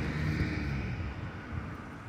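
Low, steady rumble of street traffic, with a faint engine hum, easing off slightly toward the end.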